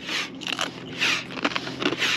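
Hand pump inflating a stand-up paddle board: rhythmic whooshing strokes of air, about two a second.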